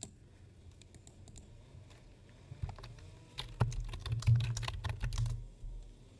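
Typing on a computer keyboard: a few scattered keystrokes, then a quicker run of keystrokes starting about two and a half seconds in and lasting about three seconds.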